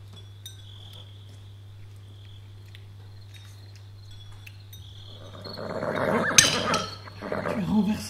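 Small clinks of tableware over a faint, high, steady chirr. About five seconds in, a loud horse's neigh swells up, peaks sharply and fades within two seconds, and a smaller cry follows near the end.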